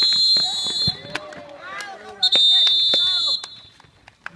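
Referee's whistle blown twice in long, steady, shrill blasts: the first is already sounding at the start and stops about a second in, and the second runs from just after two seconds in to about three and a half seconds. Players' voices are heard between the blasts.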